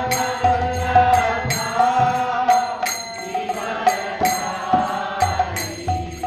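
Chanting of a devotional mantra in a slow, steady melody, accompanied by small brass hand cymbals (karatalas) struck about twice a second, each strike ringing on.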